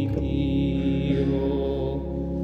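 Church organ holding the closing chord of a hymn, a steady sustained chord with a deep bass note coming in at the very start.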